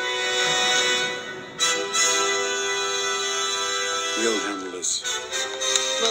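Orchestral film score holding long, sustained chords, with a brief spoken line about four seconds in.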